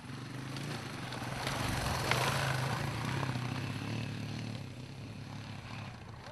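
Off-road trail motorbike engine running at a steady low note. It grows louder as the bike comes close, is loudest about two seconds in, then fades.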